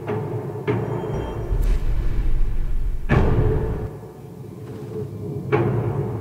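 Dramatic TV score with heavy low booming and sharp thuds. The loudest hit comes about three seconds in, over a deep rumble, and another hit comes near the end.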